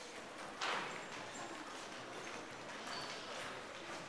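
Children's footsteps and shuffling on a stage as a group changes places, with one louder knock about half a second in.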